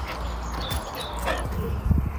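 A dog making a few short, high-pitched sounds, with a thump near the end.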